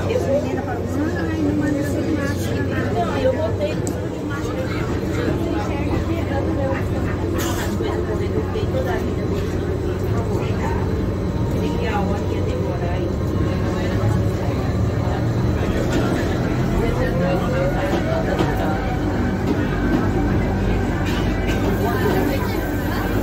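Steady hum and running noise inside a moving electric rack-railway (cog) train, heard from the driver's end of the car, with people talking in the background.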